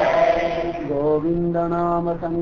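One voice chanting a devotional mantra in long, steady held notes, with short glides between the notes.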